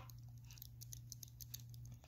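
Faint, quick light ticking and scratching of a handheld facial roller being rolled over skin, over a steady low hum.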